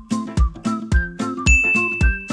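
Background music with a steady beat of about two thumps a second and short melody notes; a bright, bell-like ding sound effect starts about one and a half seconds in and rings on.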